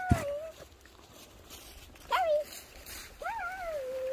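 Piglet squeals: three short high-pitched calls that rise and then fall, the last one longer and trailing off, with a single thump just after the first.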